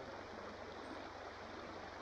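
Faint, steady rush of a shallow creek flowing over stones.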